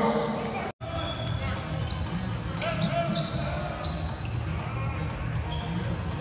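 Basketball game broadcast audio: a ball bouncing on the hardwood court and short high squeaks under play-by-play commentary, with a brief total cut-out of the sound just under a second in.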